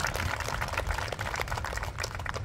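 Applause from a small audience: many separate hand claps in quick succession.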